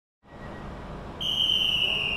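A busy railway-platform background starts suddenly, and about a second in a high, steady railway whistle sounds for over a second, dipping slightly and then jumping up a little just before it stops.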